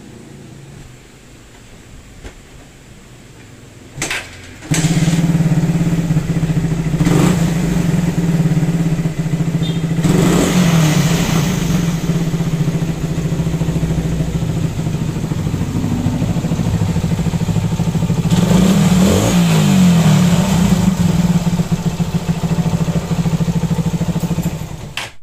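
Suzuki Raider 150 single-cylinder engine running loudly from about five seconds in, revved up briefly twice. The owner suspected the cam chain tensioner of causing the noise; the original timing chain has never been replaced.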